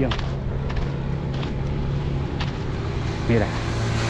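Road traffic passing on a highway: a motor vehicle's engine runs with a steady low hum over road noise, fading about two seconds in.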